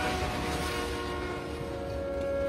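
A train striking a vehicle at a crossing: a loud, continuous rushing rumble of the collision and debris, with a steady horn-like tone held faintly underneath.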